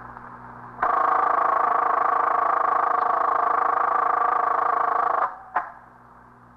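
A telephone bell rings steadily for about four and a half seconds and stops abruptly. A moment later there is a single sharp click, as of the receiver being lifted.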